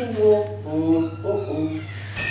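A man's voice chanting drawn-out, wordless sung notes into a microphone over a café sound system, with a steady low hum underneath.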